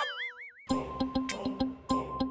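A cartoonish wobbling boing sound effect for about half a second, then background music with a quick ticking percussive beat over a held high note.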